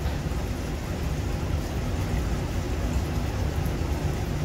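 Aquarium sponge filter running on its air supply: a steady low rumble with a soft hiss over it.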